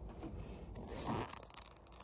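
A rabbit gnawing at a treat stick held in a hand, with a short raspy crunch about a second in.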